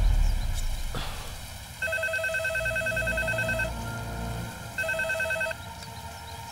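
Telephone ringing with an electronic warbling trill, twice: a ring of about two seconds, then a shorter second ring.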